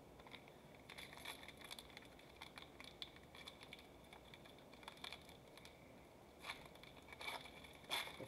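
Foil wrapper of a Mosaic football hobby pack being handled and torn open: faint crinkling and crackling of the foil with scattered small clicks, a few sharper crackles near the end.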